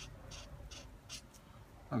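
Felt tip of a Winsor & Newton Pigment Marker rubbed across cheap paper in a series of short, scratchy strokes. The tip drags hard on the paper, which it is roughing up.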